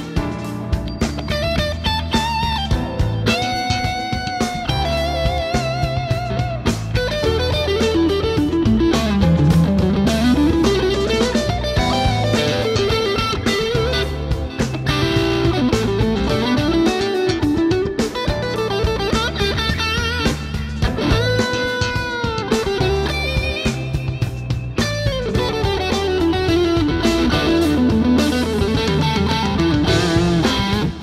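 Fender Custom Shop 1965 Telecaster Custom Heavy Relic electric guitar played through overdrive. It plays a single-note lead line with string bends and vibrato, holding long notes about four seconds in and again about twenty-one seconds in.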